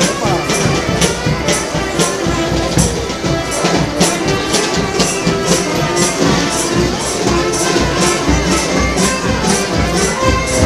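Basque folk dance music for a street procession, with a melody over a steady jingling beat of about three strokes a second.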